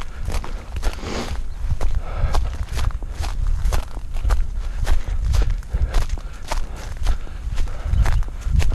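Running footsteps on a dirt path between rows of tea bushes, about two footfalls a second, over a steady low rumble.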